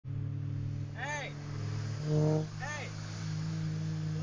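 Car engine running at a steady low cruise, heard from inside the cabin. Short voice calls rise and fall about a second in and again near three seconds, with a louder held tone just after two seconds.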